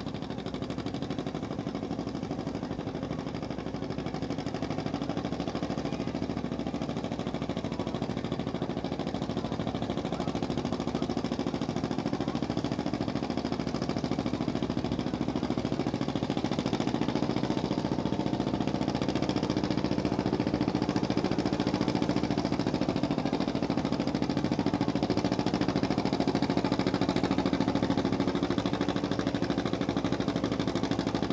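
Antique John Deere two-cylinder tractor engine pulling hard under load against a weight-transfer sled, running at a steady pitch and growing gradually louder as it comes closer.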